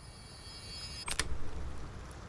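A low rumble swells up gradually, and about a second in there is a quick cluster of sharp clicks.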